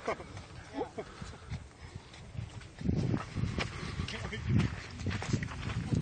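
People laughing and talking, with low, uneven rumbling noise on the microphone from about three seconds in.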